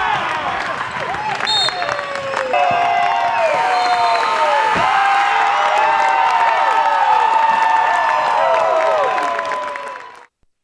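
A gymnasium crowd cheering, many high-pitched voices screaming and yelling over each other at once, growing louder about two and a half seconds in.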